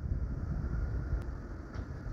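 Low, steady outdoor background rumble with a faint tick a little past the middle.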